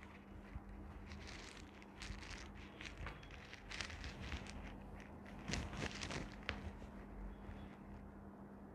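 Faint rustling of clothing and soft shuffles on a floor mat as a person shifts into a seated yoga twist, in scattered short bursts with a few soft clicks. A faint steady low hum runs underneath.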